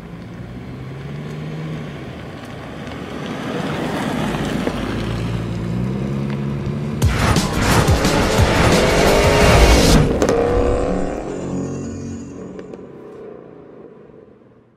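Outro sting of car sound effects over music: a steady engine-like drone builds, then a sudden loud surge of revving and tyre squeal about seven seconds in, which fades away over the last few seconds.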